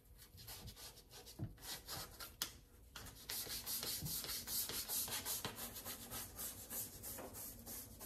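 Scrubbing a soapy stainless steel sink basin, a scrubber rubbed in quick back-and-forth strokes against the metal, growing louder and busier about three seconds in.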